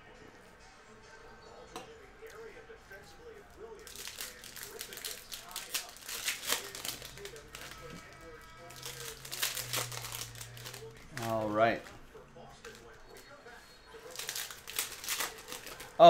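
Trading-card pack wrappers crinkling in several bursts as packs are opened and cards handled, with a short hummed voice sound about two-thirds of the way through.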